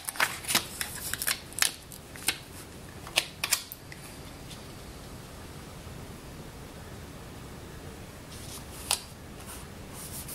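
Planner sticker sheet handled and a sticker peeled off its backing and pressed onto the page: a run of sharp paper crackles and ticks for the first few seconds, then only a steady low hiss, with one more tick near the end.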